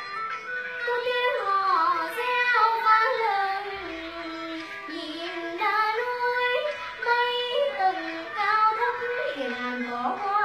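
A young girl singing a Vietnamese chầu văn (hát văn) folk-ritual song, holding long notes and sliding and ornamenting between them.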